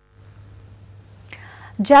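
Faint room tone with a steady low hum, a short soft breath about a second and a half in, then a woman's voice starts reading the news near the end.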